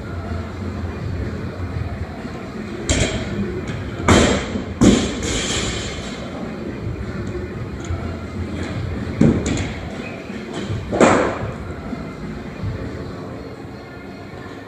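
A run of heavy thuds during a CrossFit workout: a loaded barbell with bumper plates set down or dropped on the floor, and athletes landing on wooden plyo boxes. There are about five thuds, the loudest two close together near the middle.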